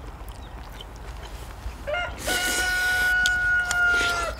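A rooster crowing once, a single long held call that starts about halfway through and drops off at the end, with faint clicks of eating before it.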